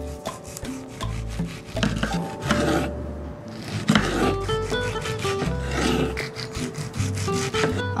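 A chef's knife sawing through a ripe heirloom tomato onto a wooden cutting board, in several slicing strokes, over background music.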